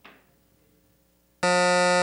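Quiz-show time-out buzzer: one loud, steady electronic buzz starting about a second and a half in, signalling that time has run out with no answer given.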